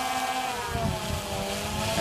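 DJI Phantom Vision 2 Plus quadcopter's propellers and brushless motors humming overhead. The pitch sags a little about a second in and comes back up.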